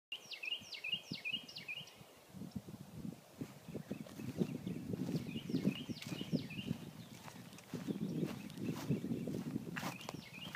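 Footsteps on a dry lawn, with a songbird singing two quick runs of repeated falling notes, one near the start and one about halfway through. There is a sharp snap just before the end.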